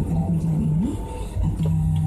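Music from the car radio: a low melody holding notes with short glides between them, breaking off briefly around the middle, over the steady low hum of the car heard inside the cabin.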